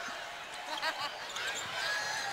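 Faint basketball court sound: a ball bouncing on the hardwood floor, with scattered voices in the arena.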